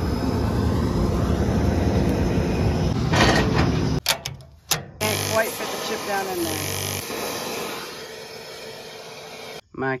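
John Deere 9870 STS combine running close by: a steady low diesel rumble that cuts off after about four seconds. A quieter, steady low engine hum follows.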